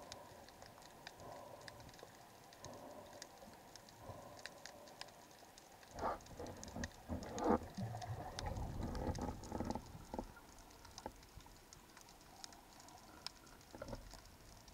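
Underwater crackle of snapping shrimp: scattered sharp clicks throughout. In the middle, a few louder muffled knocks and a low rushing from the diver moving through the water.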